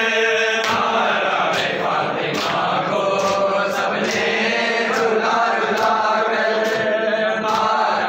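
A group of men chanting a nauha (Shia lament) together, over rhythmic chest-beating (matam): sharp slaps landing together a little more than once a second, keeping the beat of the chant.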